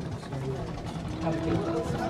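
Voices of people talking in a small room; about halfway in, a steady held tone starts and carries on.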